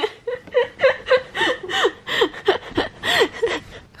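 A woman laughing in a run of short breathy bursts, about three a second.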